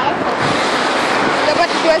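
Steady rushing noise of wind blowing across a phone microphone, with short fragments of voice near the end.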